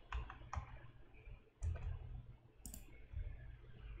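Faint computer mouse clicks, several short sharp clicks in small clusters, made while picking objects on screen, over a low steady hum.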